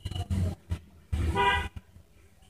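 A short vehicle horn toot about one and a half seconds in, with bursts of low rumbling noise before and during it.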